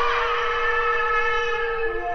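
Background music: a wind instrument holds one long, steady note, with a lower note coming in near the end.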